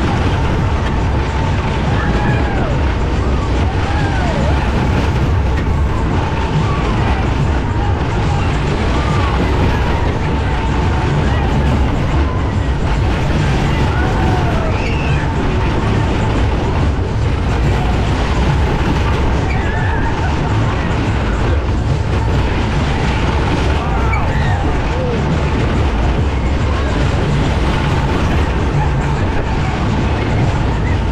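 Matterhorn fairground ride running: the cars rumble round the track under loud ride music with heavy bass, with voices mixed in.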